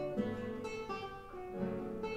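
Solo classical guitar playing: a quick run of plucked notes and chords, several new notes each second, with the strings left ringing between them.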